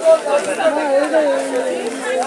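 Only people talking: voices in conversation, with no other distinct sound.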